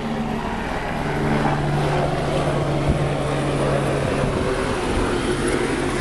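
Small-block Chevy 350 V8 running steadily at idle through dual straight-pipe exhaust, an even low drone.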